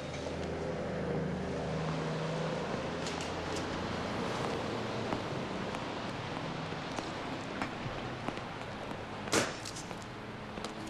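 Street traffic ambience: a steady wash of passing cars, with scattered light clicks and rustles and one sharp, louder burst near the end.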